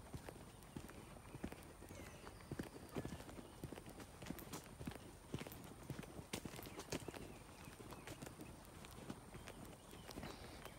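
Footsteps walking on a dry dirt track: a continuous run of short, uneven thuds and scuffs.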